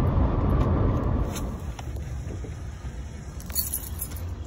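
Car road noise heard inside the cabin while driving, a steady low rumble that drops quieter about a second and a half in. A few light clicks, the brightest near the end.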